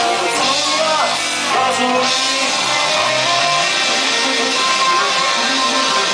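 Live rock band playing loud, with electric guitars to the fore.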